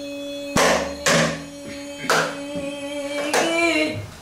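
A woman singing pansori, holding one long steady note, accompanied by four strikes on a buk barrel drum.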